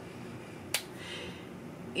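Quiet room tone with one short, sharp click about three-quarters of a second in.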